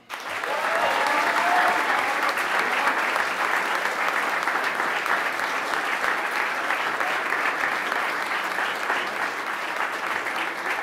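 Audience applauding steadily, starting at once and holding at an even level throughout.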